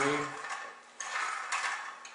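A tillering machine's pull-down mechanism working as it draws a bow's rawhide string down under load. A sharp metallic click comes about a second in and another half a second later, with harsh mechanical noise between them.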